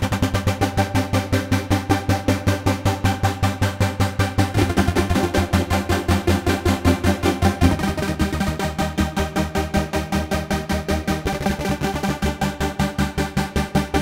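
ASM Hydrasynth playing chords, its volume chopped into rapid, even pulses by a sawtooth LFO whose rate is driven by an envelope, with wave-stacked Mutant oscillators. The chord changes about every three to four seconds.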